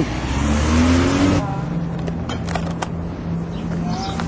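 A car passes close by, its engine rising in pitch as it accelerates, loudest in about the first second and a half. After that a steady low engine hum runs on, with a few short clicks.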